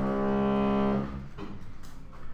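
Construction work noise: a loud, steady, pitched mechanical drone that cuts out about a second in, leaving a lower rumble.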